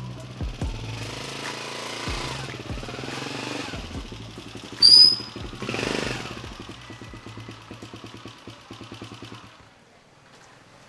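Motorcycle engine running as the bike rides in and pulls up, a fast steady beat that stops about a second before the end. About halfway through, a short sharp high-pitched tone is the loudest sound. Music is heard in the first few seconds.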